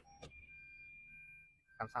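Two clicks of the gear lever going into reverse, then the car's reverse-gear warning beep: a steady high tone with a lower tone pulsing about twice a second.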